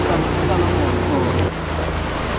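A small boat's engine running steadily under way, a low hum, with faint voices over it. About a second and a half in, the hum cuts off and gives way to a quieter outdoor background.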